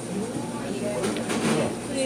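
People talking, with a few light clicks about a second in.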